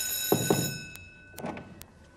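An electronic ringing tone, one steady high pitch, cuts off suddenly under a second in. Two dull thumps come just before it stops.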